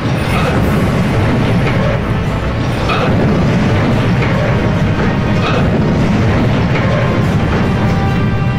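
Heavy steel helideck being pulled over and crashing down, a sustained deep rumble of collapsing metal that rises in level in the first second, with music playing over it.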